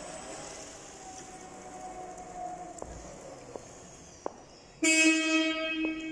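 Linde E50L electric forklift driving, its drive motor whining as it pulls away, with a few light clicks; about five seconds in its horn sounds one steady honk for about a second and a half.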